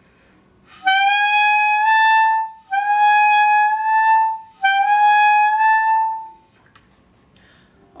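Clarinet playing a slow upward glissando from A to B three times, each note gliding smoothly up about a whole step. The player lifts the key pad slowly so the slide doesn't break into two separate notes.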